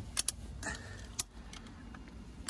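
Metal ratchet strap being cranked tight: four sharp metallic clicks, spaced unevenly, as the strap draws a giant pumpkin forward on its vine.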